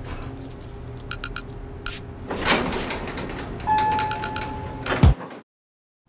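Elevator sliding doors moving with a rush of noise after a few small clicks, a single steady electronic tone held for about a second, then a heavy thud just after five seconds, followed by silence.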